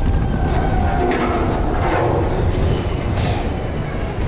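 Ropeway gondola running through the station: a steady low mechanical rumble with a faint whine, and bursts of clatter about a second in and again just after three seconds.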